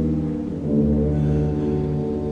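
Symphonic wind band playing sustained chords, brass to the fore, moving to a new chord about half a second in.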